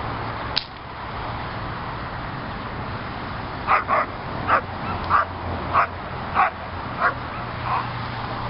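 Female German shepherd barking in protection training at a decoy: a string of about eight sharp barks, roughly one every half second to second, starting a little before the midpoint. A single sharp crack comes about half a second in.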